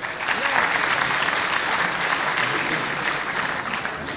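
Audience applauding: steady, dense clapping that breaks out at once and carries on throughout, with voices faintly beneath it.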